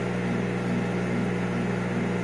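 Steady low electrical hum with a faint even hiss, unchanging throughout.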